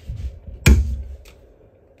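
Wooden medicine cabinet door swung shut, closing with one sharp knock about two-thirds of a second in, followed by a faint tick.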